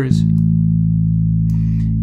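Electric bass (a Rickenbacker fitted with a humbucker at the bridge) plucking one note just after the start and letting it sustain, run through the Holt2 resonant low-pass filter set to full poles. The tone is deep and rounded, cut off above the low mids, with an intensity to the overtones of the note from the filter's resonance.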